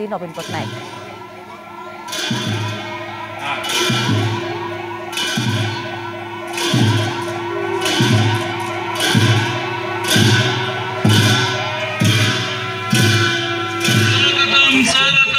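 Buddhist monastic ceremonial music: a large drum beaten about once every second, each beat with a cymbal clash, over a steady held horn-like note and a fast, wavering high line.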